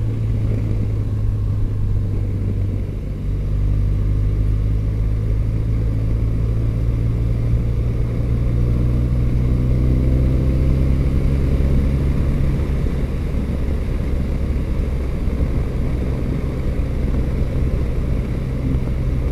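Motorcycle engine running steadily at road speed, heard from the bike with a low wind rumble. The level dips briefly about three seconds in, and the engine note rises slowly around the middle.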